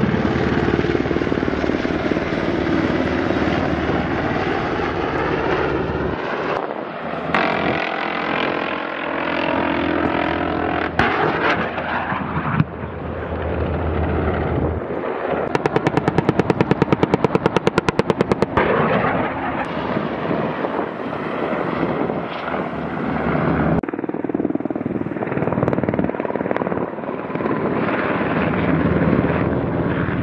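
Black Hawk-type military helicopter flying overhead, its rotors and engines running continuously as it passes. About halfway through, a machine gun fires one rapid burst of about three seconds.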